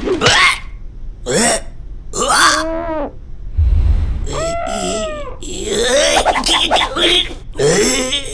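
A cartoon character's wordless vocal sounds: a string of short grunts and cries. There is a low thump about three and a half seconds in.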